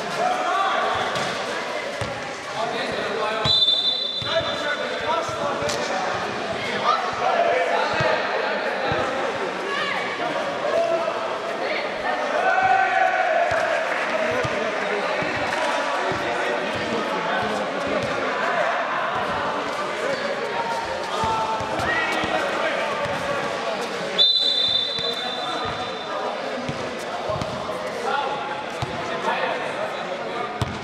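Basketball bouncing and dribbling on an indoor court floor during a pickup game, with repeated knocks of the ball and players' feet in a large hall. A brief high-pitched steady tone sounds twice, once early on and once about four-fifths of the way through.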